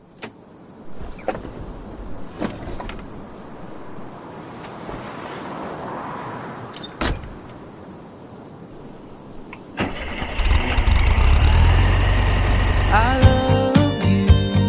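Car sounds opening a song: a few sharp clicks and knocks over a low noisy background, then about ten seconds in a car engine starts and keeps running with a heavy low rumble. Music comes in near the end.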